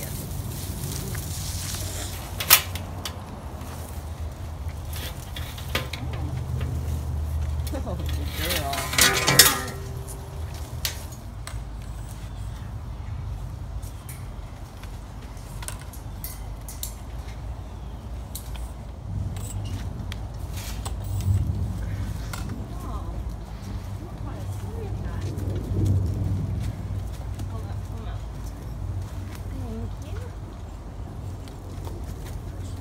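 Metal clinks and rattles from handling a wire transfer cage and catch nets, over a steady low rumble. There is a sharp click about two and a half seconds in and a louder burst of clatter around nine seconds.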